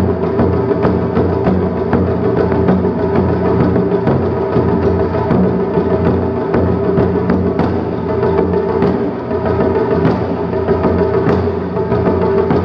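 Taiko ensemble playing: a dense, unbroken stream of strikes on barrel-bodied nagado-daiko and small rope-tensioned shime-daiko, in a driving steady rhythm.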